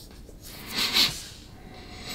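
A person sniffing sharply through the nose once, about a second in.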